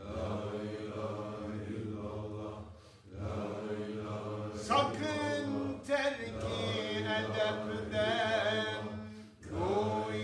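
Sufi dervishes chanting a zikr together, sustained voiced phrases over a steady low hum, broken by brief pauses about three seconds in and again near the end.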